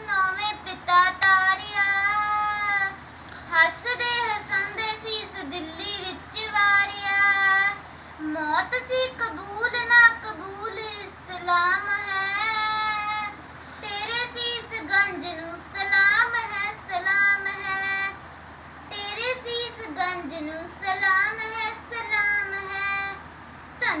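A young girl's solo voice singing a Punjabi Sikh devotional poem unaccompanied, in long held, wavering notes with short pauses between lines.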